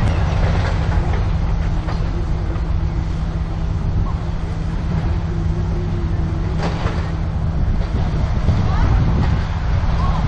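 Wind buffeting the microphone as a steady low rumble, with one light tap of a putter striking a golf ball partway through.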